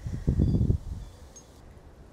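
Wind gusting on the microphone, a low rumble for about half a second that then dies down to faint rustling.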